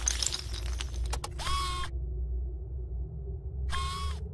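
Sound effects for an animated intro: a clatter of falling pieces dying away, then a couple of sharp clicks and two short electronic whirs that glide up, hold and drop, over a steady low rumbling drone.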